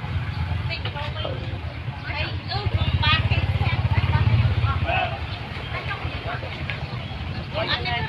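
A motor vehicle engine running close by, growing louder a few seconds in and easing off after about five seconds, with people talking in the background.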